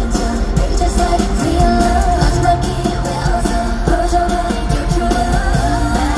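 Live K-pop song over a stadium sound system, heard from the crowd: a woman's voice singing over a pop track with a steady beat and heavy bass.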